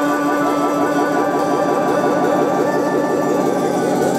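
Live rock band in an instrumental passage: an effected tone swoops in a fast repeating pattern, about seven sweeps a second and slowly fading, over a held note, with no singing.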